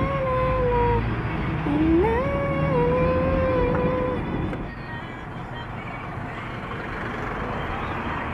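A pop song with a woman singing held notes, over the low rumble of a car cabin on the move. The singing stops a little past halfway, leaving only the car's road noise.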